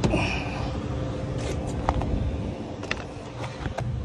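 An old car battery being lifted out of its tray: a few light knocks and scrapes of its plastic case and handle, over a steady low rumble.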